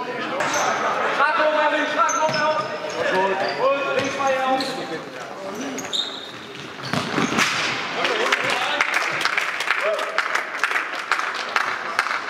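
Futsal play in a large sports hall: players' voices calling out, with short high squeaks of shoes on the wooden floor. From about halfway, a quick run of ball touches, bounces and footsteps on the court.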